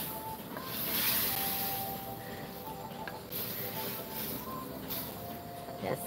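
Steady hiss of a propane burner flame under a wok of curry sauce heating toward the boil, swelling and fading a few times as a wooden spoon stirs the pot.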